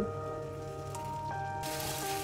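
Background music with held notes over the faint sizzle of beaten eggs frying in hot oil in a wok. Near the end the sizzle turns suddenly louder and brighter.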